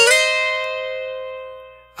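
Oscar Schmidt OD312CE twelve-string acoustic guitar picked once on its first and second string courses, a two-note dyad at the 9th and 11th frets. It rings out and fades away over about two seconds.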